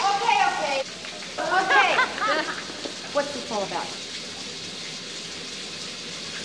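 Showers running: a steady hiss of water spray in a tiled shower room. Short bursts of voices, calls or exclamations, break in over it during the first four seconds.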